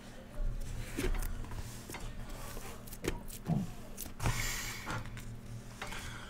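Shrink-wrapped cardboard card boxes being handled and slid against one another: a few light knocks and scrapes, with a short rustle of plastic wrap partway through.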